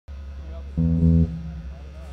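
Amplified guitar, one low note held for about half a second about a second in and then fading, over a steady low hum from the amplifiers.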